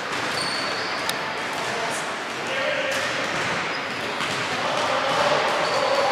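Basketball bouncing on a hardwood court, with voices of players and referees in the hall.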